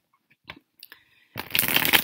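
A deck of tarot cards being shuffled by hand: after a near-silent stretch, a loud burst of rustling card noise starts about one and a half seconds in.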